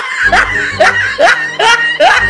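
A single voice laughing in short rising syllables, about five in two seconds.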